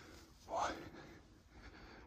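A man's single short, breathy spoken word about half a second in, over a faint, steady outdoor background.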